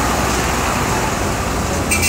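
Steady noise of road traffic on a city street: engines and tyres of passing cars rumbling, with a brief high-pitched sound near the end.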